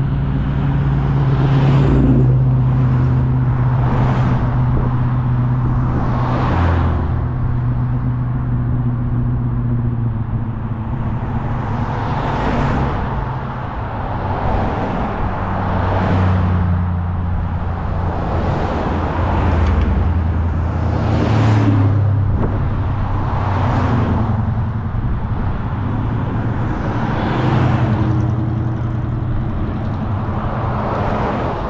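A line of cars driving past one after another, with engine and tyre noise rising as each one nears and falling away, about every two to three seconds.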